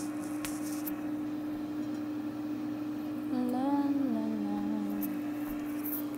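Ninja air fryer running, its fan giving a steady hum. Midway through, a woman hums a short tune for about two seconds over it.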